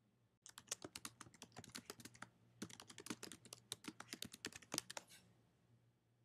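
Typing on a computer keyboard: a quick run of key clicks starting about half a second in, with a brief pause about midway, stopping about a second before the end.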